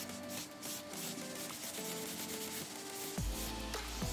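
A nail buffing block rubbed over a gel top coat in quick repeated strokes, roughing up the surface shine. Background music plays underneath, with a bass line coming in near the end.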